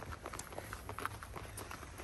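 Footsteps of a person and a leashed dog walking on dirt ground: a quick, irregular run of small clicks and scuffs.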